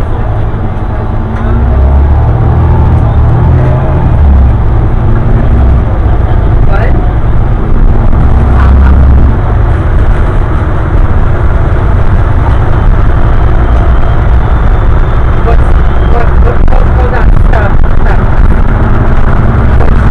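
Bus engine and road noise heard from inside the passenger cabin: a loud, continuous low rumble, with voices underneath.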